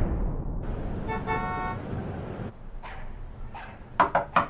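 City street ambience: traffic rumble with a single car horn toot about a second in, lasting under a second. The traffic noise falls away about two and a half seconds in.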